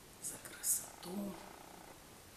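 A woman's two short, sharp breaths, then a brief low vocal sound, between lines of a poem recitation.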